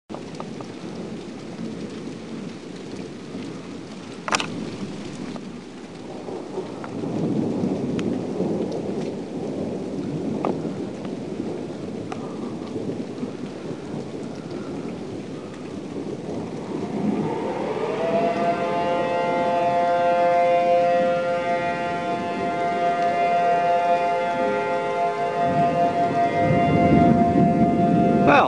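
Steady rain and rolling thunder in a thunderstorm, with a sharp crack about four seconds in. Past the midpoint an outdoor tornado warning siren winds up in pitch and then holds a steady tone, sounding the alarm for a tornado.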